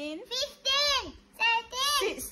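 A young child counting numbers aloud in a high voice, the pitch rising and falling on each word.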